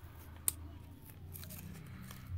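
Utility-knife blade cutting and scraping at masking tape on a painted model, with one sharp tick about half a second in and a few fainter scratches later, over a low steady hum.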